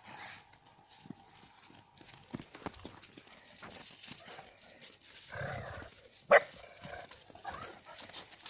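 Shepherd-dog puppies and an adult dog running and playing in snow, their paws crunching and scuffling. About six seconds in there is one loud, short bark.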